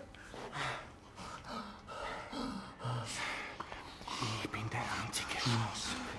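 Quiet, breathy voice sounds: whispered, broken-up speech and gasping breaths.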